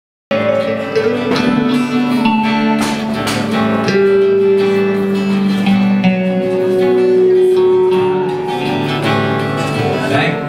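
Acoustic guitar and electric guitar playing a song live, with long held notes in the middle.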